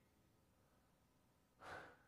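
Near silence, then one short audible breath from a man near the end.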